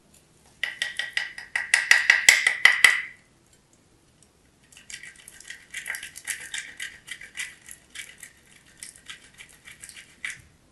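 A bar of soap grated fast across a small metal hand grater: a quick run of rasping strokes with a steady high ring under them, loudest in the first three seconds. After a short pause, a quieter run of strokes.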